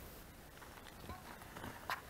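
A few light clicks and scuffs of stones in the second half, the sharpest just before the end, over faint outdoor hiss.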